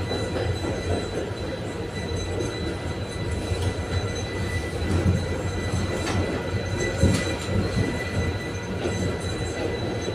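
Konstal 805Na tram riding, heard from inside the car: a steady low rumble of wheels on the rails with a thin steady high whine. A few sharp clicks or knocks come about six and seven seconds in.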